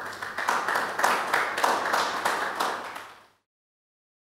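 An audience applauding, many hands clapping together; the applause fades out about three seconds in.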